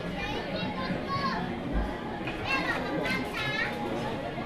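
Restaurant chatter with children's high-pitched voices, two clear high calls in the second half over a steady din of the room.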